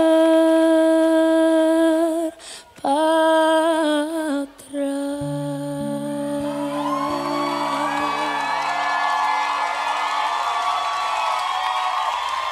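A female singer holds a long, high sung note, breathes, and holds a second wavering note. Then a sustained low chord from the band rings on as audience cheering swells at the end of the song.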